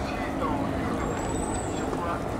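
Steady road-traffic rumble, with one thin, high squeal starting about a second in and lasting most of a second.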